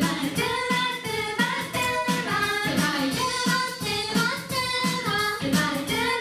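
An idol group's young female voices sing together over a pop backing track played through a PA. A steady kick-drum beat repeats a few times a second under the melody.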